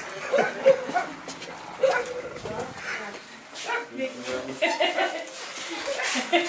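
Several people talking at once, indistinct, with some laughter mixed in.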